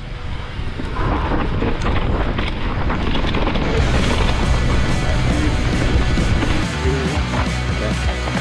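Mountain bike descending a dry dirt trail: tyre rumble, bike rattle and wind buffeting the camera's microphone, under background music.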